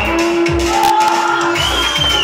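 Live keyboard-driven dance music with a steady bass-drum beat and a long held synth note, with some crowd shouts over it.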